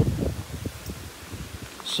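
Footsteps on loose gravel and through clumps of grass: a string of short, irregular soft knocks and rustles, heaviest in the first half second and thinning out after.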